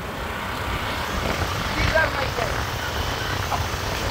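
Honda Grazia scooter riding along a road: a steady rush of wind and road noise over a low engine rumble.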